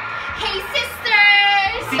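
A person singing a few short syllables, then one high note held for over half a second about a second in, sagging slightly in pitch.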